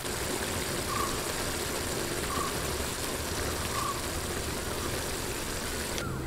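Thick clam curry boiling in an aluminium pot over a wood fire, a steady bubbling.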